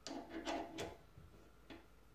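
Light clicks and knocks of a Honda CBX connecting rod being set down and shifted on a digital scale and its support stand, several in quick succession in the first second and one more click near the end.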